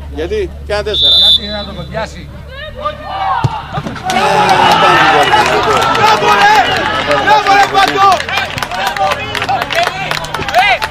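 A referee's whistle gives one short blast about a second in, and a sharp thud about three and a half seconds in, the free kick being struck. From about four seconds in, loud, excited shouting and cheering from many voices greets a goal.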